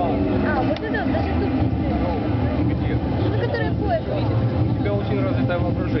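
Audience chatter: several voices talking over one another, over a steady low rumble.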